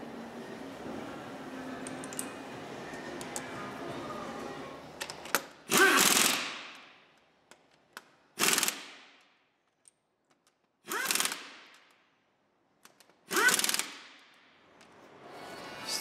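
Four short bursts of a power tool, each about a second long and about two and a half seconds apart, after a few seconds of faint background sound.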